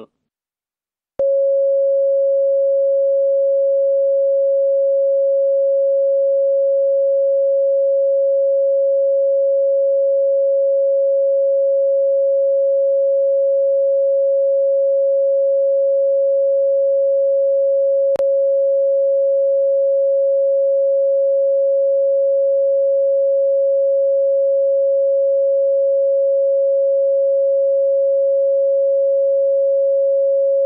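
Steady, mid-pitched single-tone TV test signal that accompanies the colour-bar test card when the channel goes off air for maintenance. It comes in suddenly about a second in after a moment of silence, with one faint click about two-thirds of the way through.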